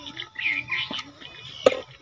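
Faint background voices with two sharp taps, the louder one about one and a half seconds in.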